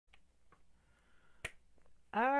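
Near silence: faint room tone with one sharp click about one and a half seconds in, and a few fainter ticks around it.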